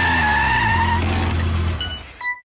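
Car sound effect: an engine running with tires squealing for about a second, then the engine note alone, fading out near the end.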